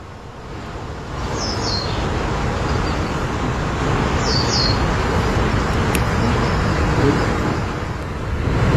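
Outdoor background noise: a steady rushing hiss, heaviest in the low end, that swells about a second in and then holds. Over it a small bird gives two quick pairs of short, high, falling chirps, about one and a half and four and a half seconds in.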